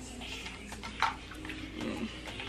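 Trigger spray bottle spritzing liquid onto hair, with one short sharp squirt about a second in.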